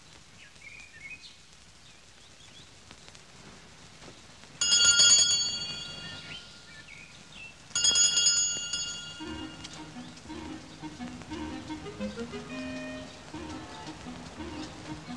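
Two bright ringing strikes about three seconds apart, each dying away over a second or two. Soft, low music follows from about nine seconds in.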